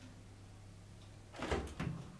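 Electric oven door of a Hansa FCMW68020 cooker being pulled open, with a couple of short clunks about one and a half seconds in. A steady low hum runs underneath.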